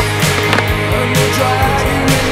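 Heavy rock music with a steady beat, over which a skateboard's trucks grind along a concrete ledge, with a sharp clack about half a second in.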